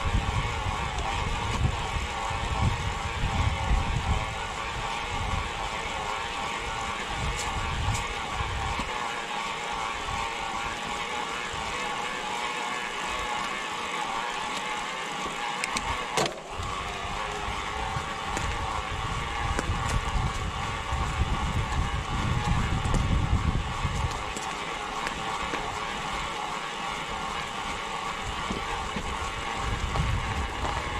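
Mountain bike riding uphill on a concrete and gravel track: steady tyre and drivetrain noise, with wind buffeting the action-camera microphone in gusty low rumbles. A brief dip in the noise about halfway through.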